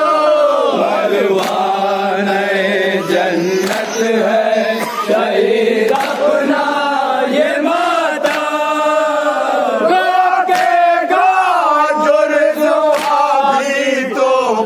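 A group of men chanting an Urdu noha (mourning lament) together in a rising and falling melody. Sharp slaps come every second or so, from hands beating chests in matam.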